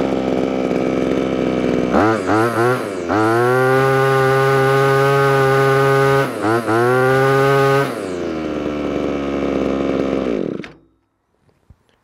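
Small two-stroke engine of a Chinese grass trimmer idling, then given a couple of quick throttle blips about two seconds in and held at high revs for several seconds with a brief dip. It drops back to idle and is switched off near the end, cutting out suddenly; the owner reckons it could use a little carburettor tuning.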